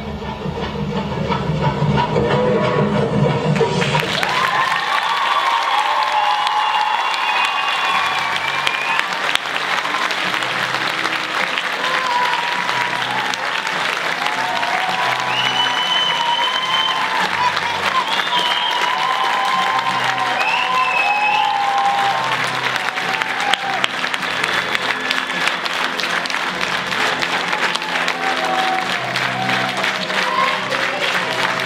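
Audience applause that swells in about four seconds in and carries on steadily, with music playing a melody over a regular beat at the same time.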